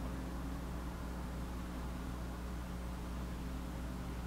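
Room tone: a steady low hum with a faint hiss underneath, unchanging throughout.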